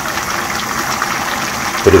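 Chicken braise in a spicy sauce bubbling steadily in a pan on a gas burner, a continuous even simmer as it cooks through.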